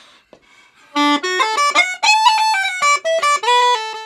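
Uilleann pipes chanter playing a fast run of separate notes starting about a second in, climbing from low to high and then moving around in the upper octave, showing its two-octave range. No drones sound beneath it.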